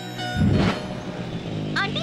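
A motor scooter's engine running, rising loudly about half a second in and then settling into a steady hum.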